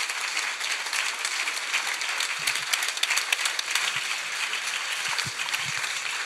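Audience applauding steadily at the end of a talk.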